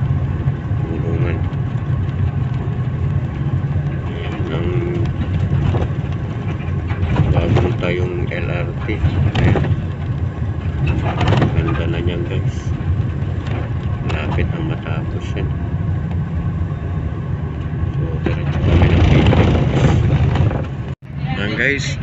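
Steady low rumble of a moving bus's engine and tyres heard from inside the cabin at expressway speed, with indistinct voices at times.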